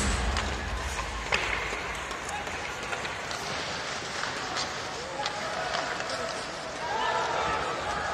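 Ice hockey play heard from the stands: voices and crowd chatter around the rink, with scattered sharp clacks of sticks and puck on the ice. Loud arena music cuts off at the very start.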